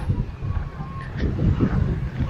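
Wind rumbling on the microphone of a camera carried while walking, a low, uneven rumble.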